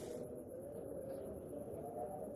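Quiet, steady, low sound from a dinosaur documentary's soundtrack played back in a lecture room, with almost nothing in the upper range.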